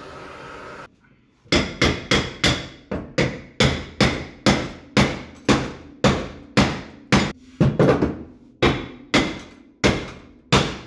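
A handheld gas torch hisses steadily for about a second. Then a hammer strikes the heated steel frame rail about twice a second, each blow ringing briefly. The rail is being knocked flat against the subframe connector clamped beneath it, which acts as a dolly.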